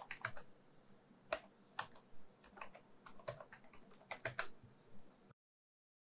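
Computer keyboard typing: irregular keystrokes in short runs, stopping about five seconds in.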